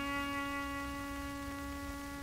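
A single held note from a small chamber ensemble of strings and woodwind, sustained steadily after a short descending phrase, in an early-1930s gramophone recording with a low hum and rumble beneath.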